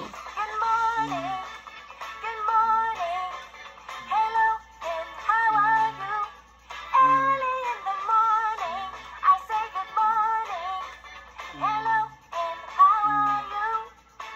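Children's good-morning hello song: a sung melody over backing music, with a low bass note coming round every second or so.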